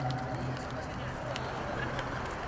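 Indistinct background voices over open-air ambience, right after a song ends. A low note of the backing music fades out in the first half second.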